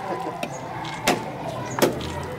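Coconuts smashed by hand on the ground in a ritual coconut-breaking: two sharp cracks, about a second in and again near the end.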